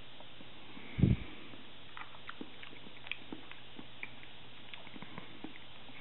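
Close-miked mouth chewing soft onsen tamago and avocado: a loud low thump about a second in, then a run of small, wet clicks of the mouth and tongue.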